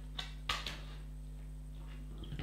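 The snap-on plastic back cover of a Samsung Galaxy S4 being prised off, giving a few small plastic clicks about half a second in. A low, steady hum runs underneath.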